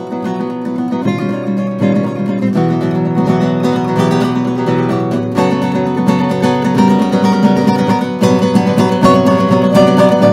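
Nylon-string classical guitar played solo: a fast, dense passage of many notes and chords that builds steadily louder.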